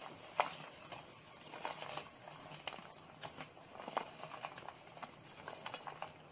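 Soft, irregular taps and rustles of crumbled vadai pieces being broken up and dropped by hand from a steel plate into the masala gravy in a kadai. A faint, high chirp repeats evenly about two and a half times a second in the background.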